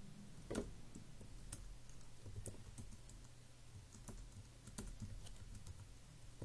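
Computer keyboard keys tapped faintly and irregularly, with one louder keystroke about half a second in, over a low steady hum.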